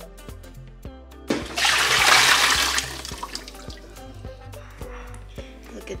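Kitchen tap water gushing into a ceramic pot at the sink for about a second and a half, loud over background music.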